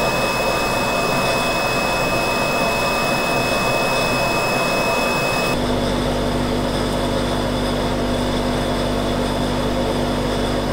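FPZ K-series side-channel blower running steadily in a drying plant. It starts with the previous impeller model, where a steady high whistle stands out. About halfway through it switches to the new Evolution impeller: the whistle drops out and a lower steady hum takes over, with the sound spread more evenly at the same loudness.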